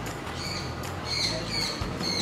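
Small birds chirping: several short high chirps in quick succession over a steady low background hum.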